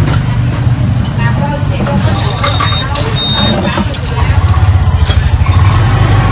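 A low engine-like rumble under background chatter, pulsing more strongly in the second half, with two short high beeps about halfway through.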